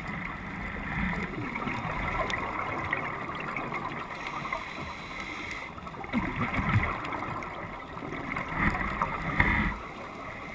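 A scuba diver's breathing heard underwater, with gurgling surges of exhaled bubbles, the loudest about six and nine seconds in.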